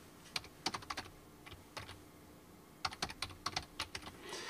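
Typing on a computer keyboard: scattered keystrokes over the first two seconds, a short pause, then a quicker run of keystrokes near the end.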